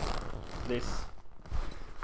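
Synthetic-fabric Benetton bag rustling as it is pulled out and handled.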